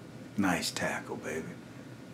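A person's voice speaking a few unclear words, starting about half a second in, over a low steady hiss.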